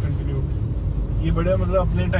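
Steady low engine and road rumble inside a moving car's cabin. A voice talks over it for the second half.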